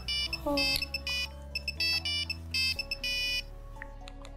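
Mobile phone ringtone: a quick run of high electronic beeps in short on-off bursts, which stops about three and a half seconds in when the phone is picked up.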